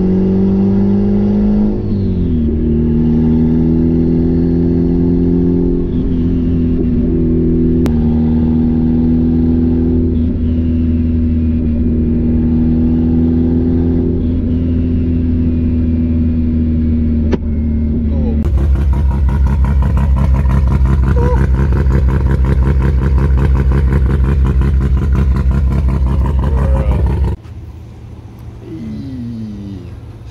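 Turbocharged Mazda Miata four-cylinder engine and exhaust heard from inside the cabin while driving, a steady drone with small shifts in pitch as the throttle changes. About two-thirds in the sound turns harsher and rapidly pulsing for several seconds, then drops off suddenly near the end.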